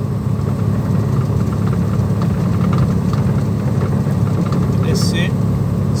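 Diesel engine of an Iveco truck running steadily in gear, heard from inside the cab as the truck descends a long mountain grade. It makes an even low drone.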